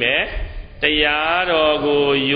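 A Buddhist monk's voice intoning in a drawn-out, chant-like recitation: a short phrase, a brief pause, then long held tones from just under a second in.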